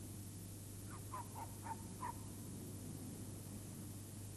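A run of about five short, high animal calls about a second in, over a steady low hum.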